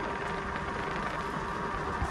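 Steady rushing tyre-and-wind noise of a small three-wheeler being ridden along a paved road, with a faint steady whine underneath.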